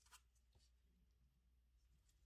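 Near silence: faint handling of small plastic model-kit parts in gloved hands, with a soft click just after the start.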